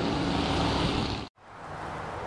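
Steady rushing background noise with a low hum, cut off abruptly about two-thirds of the way through by an edit, then back at a lower level.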